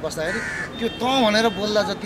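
A man speaking, with a short bird call behind his voice about half a second in.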